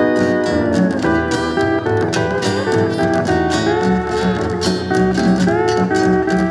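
Electric lap steel guitar taking an instrumental solo, the steel bar sliding the chord down in pitch over the first second and bending up again near the end, over a steady strummed rhythm accompaniment and bass.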